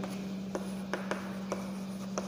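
Chalk writing on a chalkboard: faint scratching with several short sharp taps and strokes as the chalk meets the board, over a steady low hum.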